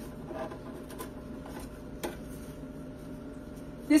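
Nostalgia tabletop cotton candy machine running steadily, its motor spinning the heated head as it throws out floss, with a couple of faint clicks about one and two seconds in.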